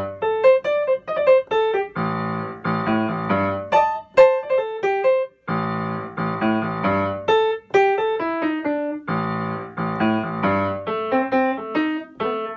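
Piano playing a repeating left-hand bass riff, with short improvised right-hand single-note phrases filling the rests between its statements. The riff comes back about every three and a half seconds.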